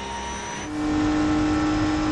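BMW M4 GT3 race car's engine heard from onboard, running at constant revs with a steady note that comes in louder just under a second in.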